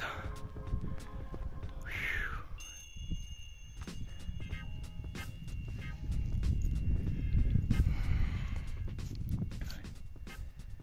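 Wind rumbling on the microphone, strongest from about six to eight seconds in, with footsteps crunching in snow.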